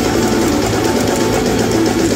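Live band playing a dense, loud passage on electric bass, electric guitar, drum kit and keyboards.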